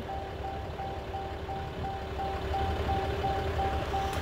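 Ram 3500's cab warning chime beeping steadily at about three beeps a second while the door stands open, over a low steady rumble.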